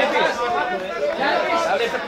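Many people talking and calling out at once: a steady jumble of overlapping voices, none standing out.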